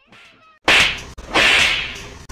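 A sudden loud smack about two-thirds of a second in, like a hand or slipper striking, followed about half a second later by a longer swishing noise.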